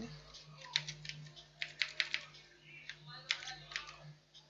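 Computer keyboard keys being typed: a handful of separate clicks in small groups, over a faint steady hum.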